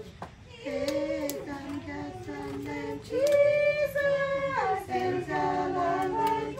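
Several voices singing a song together in harmony, with long held notes that slide from one pitch to the next.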